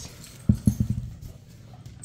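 A dog's paws and claws clattering on a tile floor as it scrambles after a tossed toy: a quick run of knocks about half a second in.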